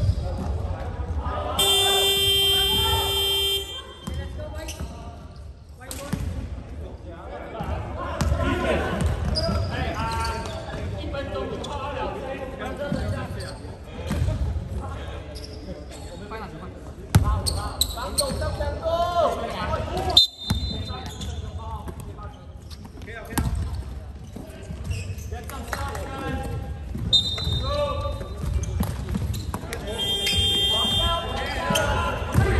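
Gym scoreboard buzzer sounding one steady tone for about two seconds near the start, marking the end of a timeout. After it come players' voices, a basketball bouncing on the hard sports hall floor and a couple of short referee whistle blasts, all in the echo of a large hall.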